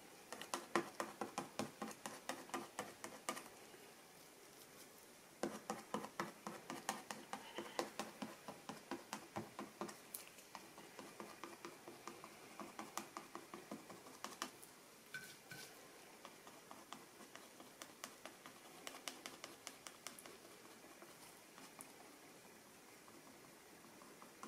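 Plastic credit-card edge dabbing and scraping acrylic paint onto paper: faint, quick scratchy strokes, about four a second, in two runs with a pause about four seconds in. The strokes grow sparser and stop in the last few seconds.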